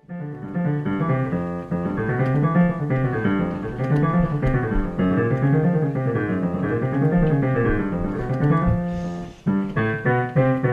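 Yamaha YDP-223 digital piano played in rising and falling runs of notes, with a brief break about nine and a half seconds in. The notes all sound at an even loudness: the intermittent fault of suddenly loud or dead keys, blamed on dirty rubber key contacts, does not show here.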